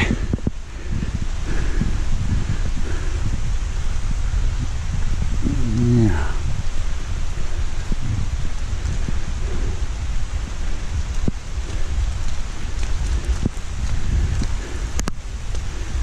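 Steady noise of light rain in the woods with low rumble on a handheld camera's microphone while walking on a path, and a short murmur of a voice about six seconds in.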